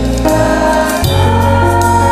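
Student choir singing held notes over an accompaniment; about a second in the chord changes and the bass grows fuller.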